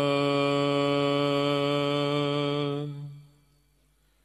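A man's voice chanting a line of Sikh scripture (Gurbani), holding one steady note for about three seconds and then fading out.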